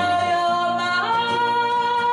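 A woman singing a long wordless held note over acoustic guitar; about a second in her voice steps up to a higher note and holds it.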